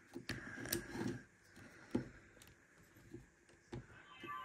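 A handful of faint, sharp clicks as the buttons on a GE HZ15 digital camera are pressed and held to power it on, with light handling of the camera body between them.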